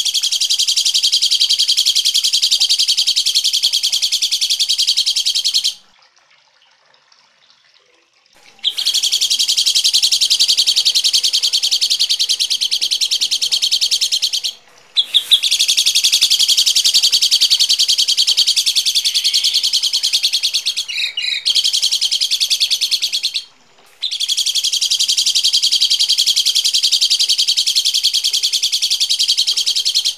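Harsh, rapid chattering bird calls, loud and high-pitched, coming in long bursts of several seconds with short breaks, the longest break a few seconds in.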